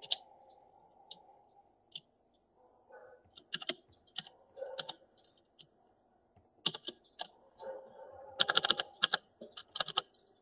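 Computer keyboard typing in short runs of keystrokes with pauses between them, and a quick flurry of keys about eight and a half seconds in.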